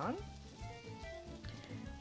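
Quiet background music, with faint sizzling from breaded eggplant slices frying in olive oil in a skillet.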